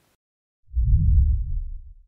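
Deep boom of a transition sound effect, rising out of silence about two-thirds of a second in and fading away over about a second.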